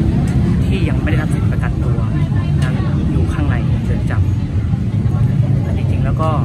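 Steady low rumble of street traffic, with scattered voices of passers-by over it.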